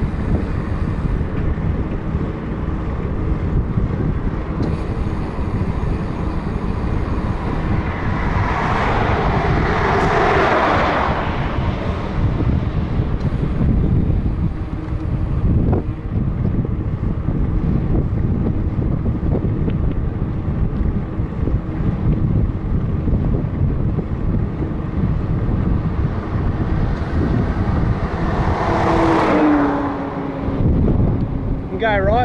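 Wind buffeting the microphone of a camera on a moving bicycle, a steady rumble with road noise underneath. Twice a passing vehicle swells up and fades, about eight to twelve seconds in and again near the end; the second drops in pitch as it goes by.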